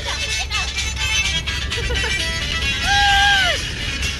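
Music and voices over the steady low rumble of a moving bus. About three seconds in, a voice holds one long note that drops away at its end.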